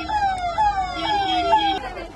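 Electronic vehicle siren sounding a fast repeating falling wail, about two sweeps a second, which cuts off shortly before the end.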